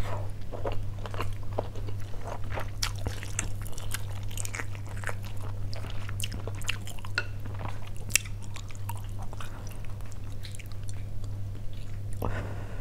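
A person chewing a mouthful of stewed beef close to the microphone: many short, irregular wet mouth clicks and smacks. A steady low hum runs underneath.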